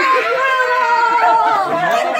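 Excited voices of several people talking and exclaiming over one another, with one high voice held for about a second.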